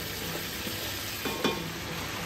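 Beef chunks sizzling as they fry in melted fat in a pot, while diced onions are tipped in from a steel tray and pushed about with a wooden spoon. There is a soft knock about a second and a half in.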